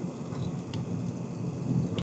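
Low, uneven rumble of background noise picked up by a video-call microphone, with one faint click about three-quarters of a second in.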